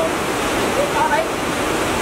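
Steady rush of a rocky stream tumbling over boulders.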